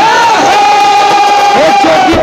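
Voices raised in a loud, long shouted call, held on one pitch for about a second and a half before breaking off, over a live devotional band.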